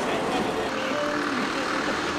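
City street noise: steady traffic running, with faint voices in the background.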